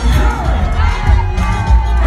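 Loud live gospel music with a heavy bass beat and voices over it, mixed with an audience cheering and shouting.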